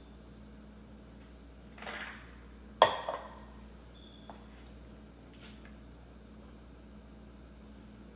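Quiet kitchen sounds over a steady low hum: a soft scrape of a utensil stirring soup in a stainless steel wok about two seconds in, then a sharp knock of the utensil against the wok just under three seconds in, with a lighter tap just after.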